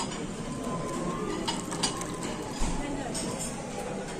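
Crockery and cutlery clinking at a restaurant table over a murmur of diners' chatter, with a few sharp clinks between about one and a half and three seconds in.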